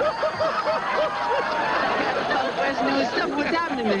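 Studio audience laughing, with one voice laughing hard in quick repeated 'ha-ha' pulses, about five a second, over the first second and a half. Talk starts near the end.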